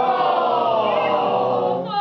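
Live singing on stage: one long held phrase whose pitch sinks slowly, with a new sung note starting near the end.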